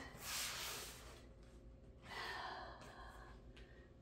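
A woman's breathing during yoga: two audible breaths, the first right at the start lasting about a second, the second about two seconds in.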